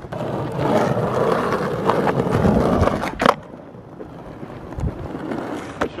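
Skateboard wheels rolling on asphalt for about three seconds, then one sharp clack of the board striking the pavement as a shove-it is attempted.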